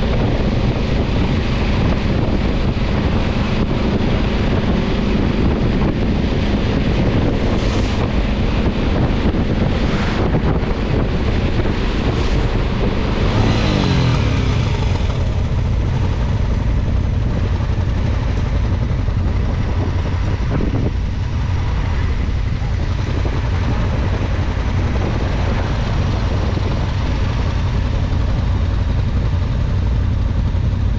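Motorcycle engine running at road speed under heavy wind noise on the microphone. About halfway through, the engine note falls away as the bike slows to a stop, and it then runs steadily at idle.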